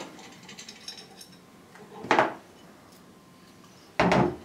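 Bronze impeller being spun by hand off the reverse-threaded shaft of a Taco 1900 series pump, with faint metal rubbing and light ticks at first. One louder short knock comes about two seconds in, as the impeller comes free.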